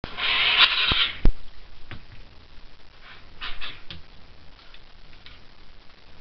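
Homemade RC boat's brass jet drive pushing water in spurts in a bathtub: a loud burst of rushing, splashing water in the first second with a couple of sharp knocks, then shorter bursts about three and a half seconds in. The stop-start running is the jerkiness that the builder puts down to radio interference from the antenna wire.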